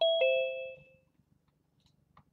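A two-note "ding-dong" chime: a higher note, then a lower one a moment later, both ringing out and fading within about a second.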